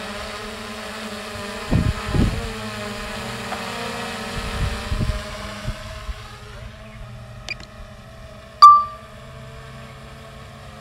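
DJI Mini 3 drone hovering just after take-off, its propellers giving a steady buzz of several tones over a hiss that fades about halfway through. A few low thumps come in the first half, and near the end a sharp click with a short beep is the loudest sound.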